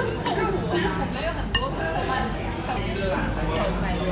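Metal spoon clinking against a ceramic bowl while scooping rice, with a few sharp clinks, one near the start and one about one and a half seconds in, over steady indistinct voices.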